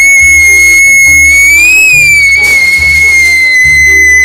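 A girl's long, very loud, high-pitched scream, held at one pitch and rising a little about halfway through, over background music with a pulsing beat.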